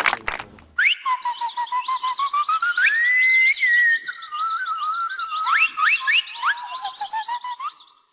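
Birds calling: a fast run of repeated high chirps, several a second, over longer whistled notes that glide up and down. It starts abruptly about a second in.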